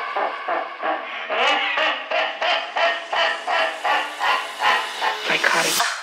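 UK bass house DJ mix in a breakdown: the bass and kick are cut out, leaving chopped synth stabs about three a second that grow steadily brighter as a filter opens, building up.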